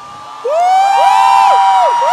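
Crowd cheering, with several long, high screams overlapping and held, starting about half a second in.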